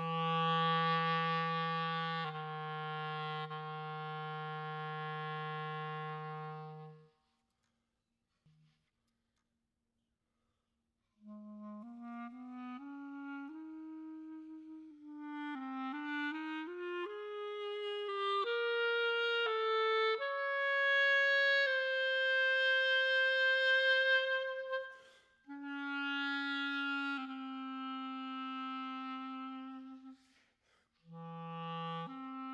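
Solo clarinet playing slow contemporary music. It holds a long low note, goes silent for a few seconds apart from one short soft note, then climbs note by note to a long high note, and ends on another long held note lower down.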